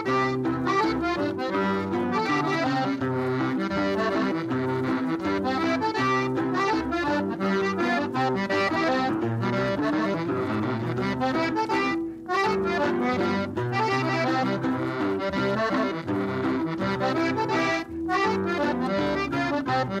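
Recorded traditional music led by an accordion playing a busy melody over a steady, repeating bass line, with no singing in this passage. The music dips briefly twice, about twelve and eighteen seconds in.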